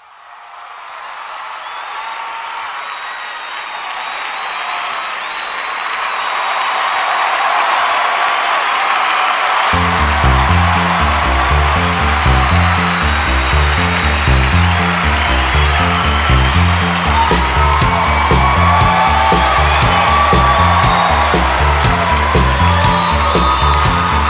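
A pop song's intro fading in from silence: a hazy, swelling wash with held tones, then a pulsing bass line and beat come in about ten seconds in.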